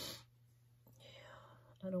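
A woman's short breathy exhale, then a faint breathy sound falling in pitch about a second later, before she starts speaking near the end.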